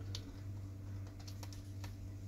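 About half a dozen light, irregular clicks and taps of a screwdriver and fingers on a laptop's plastic bottom case, over a steady low hum.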